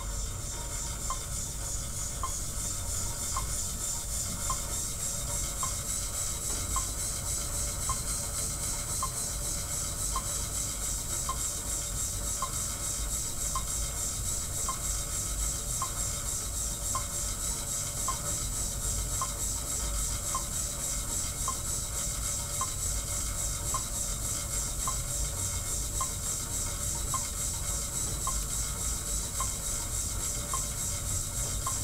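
Monark cycle ergometer being pedaled: its flywheel turns against the friction belt, set to 2 kp for the second stage, and gives a steady rubbing hiss. A faint tick repeats a little more than once a second.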